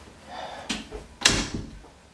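A wooden interior door being shut: a click, then a louder knock against its frame about a second and a quarter in that rings briefly.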